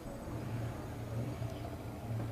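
A low, steady engine hum running throughout.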